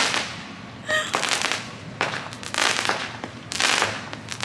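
Consumer fireworks going off in the neighbourhood: four bursts of bangs and crackle spread over a few seconds, each dying away within about half a second.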